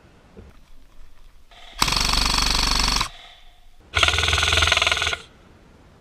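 Airsoft electric rifle (M4-style AEG) firing two full-auto bursts, each a little over a second long, with a short pause between them.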